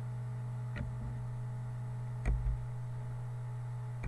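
Steady low electrical hum with two clicks at the computer as a shape is copied and pasted: a faint one just under a second in and a sharper one with a low thump a little past two seconds.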